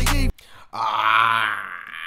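A rap track with heavy bass cuts off abruptly a moment in. After a brief pause, a man lets out one long, drawn-out groan-like exclamation of amused disbelief.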